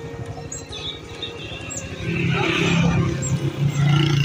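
Background music over a motorcycle engine running on the move, its sound swelling much louder about halfway through.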